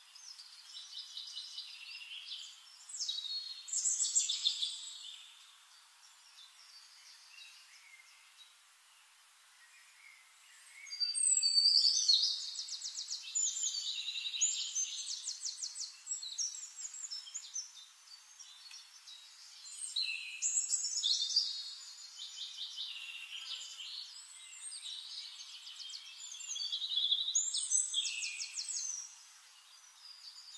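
Small birds singing: bursts of rapid high trills and chirps, with a lull of several seconds near the start.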